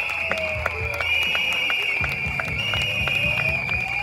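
Large outdoor crowd of protesters clapping and cheering, many hands clapping unevenly, with a steady shrill whistling held over the noise.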